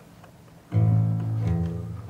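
A quiet moment, then about three-quarters of a second in a folk-instrument orchestra with a plucked solo bass starts playing. Loud low bass notes carry the line and change pitch about every half-second, with higher plucked strings above.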